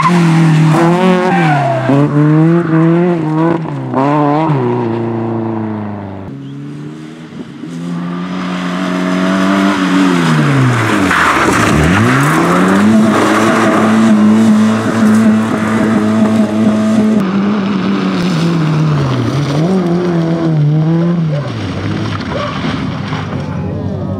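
Small rally hatchback engines driven hard on a stage, one car after another: revs rising and falling quickly through corners, then a sharp drop in pitch near the middle as the driver lifts off, followed by a long stretch held at high, steady revs that sags briefly near the end.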